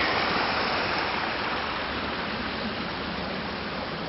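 Muddy, silt-laden storm runoff rushing over rocks into a stream, a steady rush of water that grows gradually quieter.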